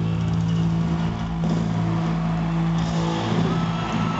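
Rock band's last chord held and ringing out as a steady, sustained low drone from guitars and amplifiers, dying away near the end as the crowd begins to cheer.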